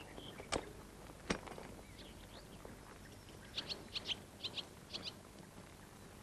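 A small bird chirping in short, high, quick notes, mostly in pairs, through the second half, over faint outdoor background. Two sharp knocks come early on, about half a second and a second and a quarter in.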